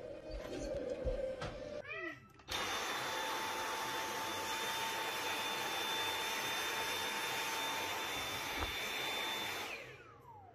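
Vacuum cleaner running steadily with a high whine. It starts abruptly a couple of seconds in and dies away just before the end. Before it, there is a short stretch of mixed sound from a TV.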